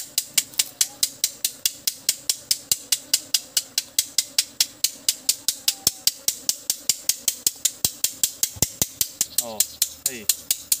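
An insect calling: a rapid, even train of sharp high-pitched clicks, about five a second, over a faint low steady hum.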